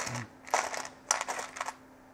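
A brief rustle followed by a few light clicks, as of small electronic parts being handled on a workbench.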